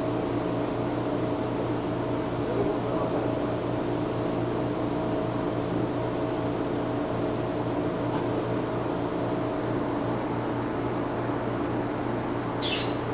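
Steady machine hum from running aquarium equipment: a low drone with a few held tones over a soft hiss.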